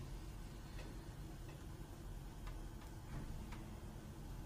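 Faint, irregularly spaced light clicks, about four of them, over a steady low room hum.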